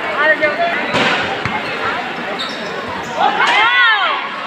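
Basketball bouncing on a hard court, a few sharp thuds about a second in, amid the shouts of players and spectators. A long rising-and-falling shout comes near the end.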